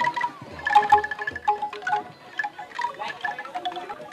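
Bamboo angklung played in a melody, each note a rapid rattling tremolo of clacking bamboo tubes, with three soft low thuds in the first second and a half.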